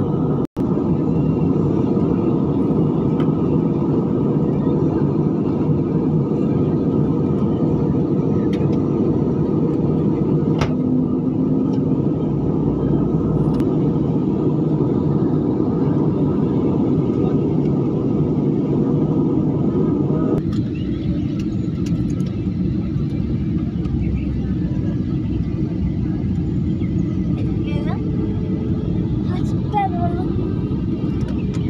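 Jet airliner cabin noise: the steady rush of engines and airflow heard from a window seat. About twenty seconds in, the higher part of the noise drops away and the whole sound steps down slightly.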